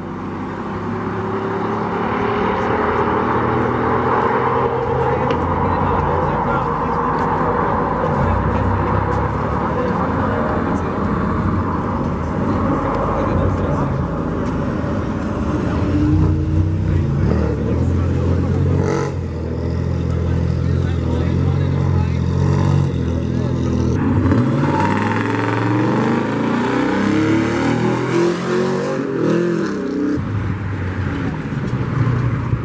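Car and truck engines revving and accelerating along the street, their pitch rising and falling several times, with a steady low exhaust rumble. A single sharp click comes about two-thirds of the way through.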